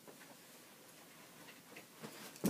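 Near silence: room tone with a few faint, light clicks.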